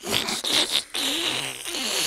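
Several people making slurping, sucking noises with their mouths, imitating oxen drinking a river dry: a continuous hissy slurp with a brief break about a second in.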